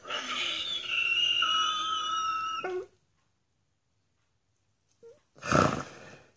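Men stifling laughter behind their hands: a high, squeaky wheeze held for almost three seconds, then a pause, then a short snorting burst of laughter near the end.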